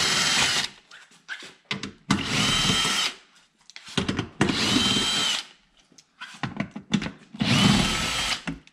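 Cordless drill with a socket spinning bolts out of the underside of a car's front bumper air dam, in four separate runs of about a second each with a steady whine. Light clicks of the tool and bolts come between the runs.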